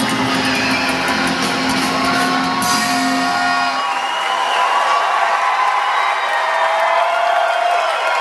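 A live rock band holds its final chord, which cuts off about four seconds in, while a concert crowd cheers; the cheering carries on alone after the music stops.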